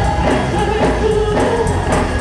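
Gospel choir singing loudly in full voice, with a steady percussion beat behind it.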